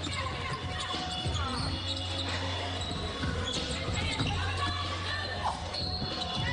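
A basketball being dribbled on a hardwood court, with sneakers squeaking and players calling out in a near-empty arena. A steady low hum runs underneath.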